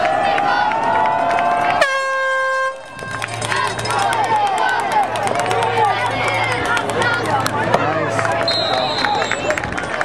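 Spectators' drawn-out rising yell breaks off into a single air horn blast about two seconds in, lasting under a second. Then spectators shout and cheer through the play, and a short whistle sounds near the end.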